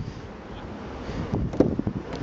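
Outdoor wind buffeting the microphone as a low, steady rumble, with a few brief soft knocks about one and a half seconds in.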